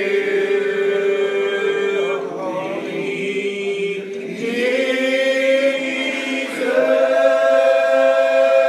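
Old Regular Baptist congregation singing a lined-out hymn unaccompanied, in slow, drawn-out notes, each held about two seconds before the voices slide together to the next pitch.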